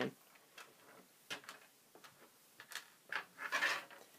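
Small metal screws and plastic kit parts being slid across a tabletop by hand, giving a few faint light clicks and a brief rustle near the end.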